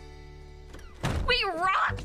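Soft background music from an animated film's soundtrack, a dull thump about a second in, then a man's voice starts speaking.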